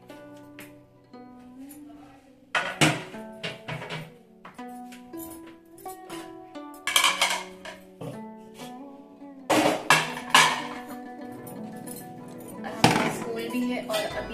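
Washed steel plates and utensils clinking and clattering as they are handled and set down, in several separate bursts, over background music.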